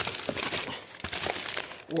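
Plastic food packets crinkling and rustling as they are handled, a close, continuous run of small crackles.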